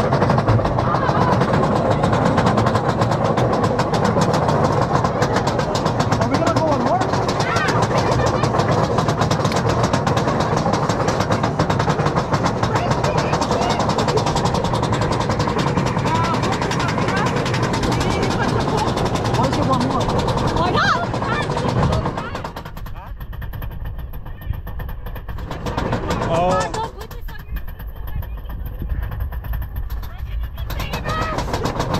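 Roller coaster ride: the train running on its track with wind rushing over the microphone, mixed with riders' voices. The rushing noise drops off sharply about 22 seconds in.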